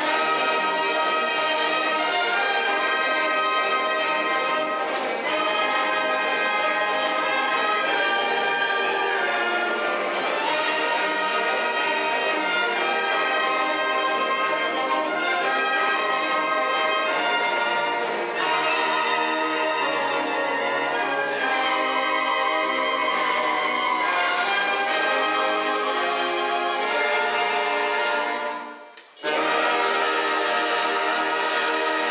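A wind band of brass and saxophones playing an orchestral piece, trumpets and trombones prominent. Shortly before the end the music breaks off for a moment, then carries on.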